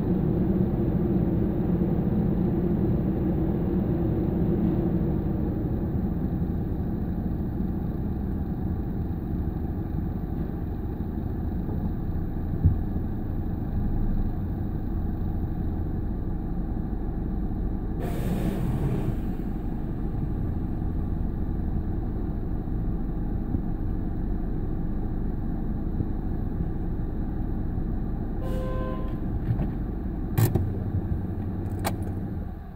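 Automatic tunnel car wash machinery running, heard from inside the car: a steady low rumble with water spraying on the glass. There is a single knock about halfway and a brief louder hiss a little past halfway.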